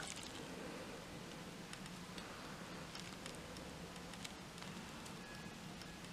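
Faint, scattered small clicks and rustling from a toddler handling yellow plastic safety scissors, over low room tone.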